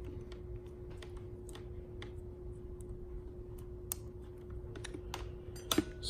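Small irregular plastic clicks and taps from hands fitting tube clips onto the push-in connectors of a 1/4-inch solenoid shut-off valve, with a sharper click near the end. A faint steady hum runs underneath.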